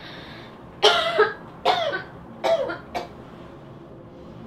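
A woman coughing three times, each cough less than a second after the last, starting about a second in.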